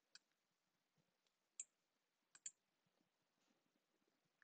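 Near silence with a few faint, sharp clicks, two of them close together about two and a half seconds in: a stylus tapping and writing on a tablet screen.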